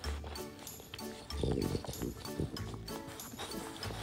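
Background music with a steady beat, over a French bulldog licking out an empty yogurt cup, her tongue and snout working against the inside of the cup.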